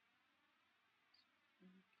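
Near silence: faint steady hiss of room tone, with a brief faint low hum near the end.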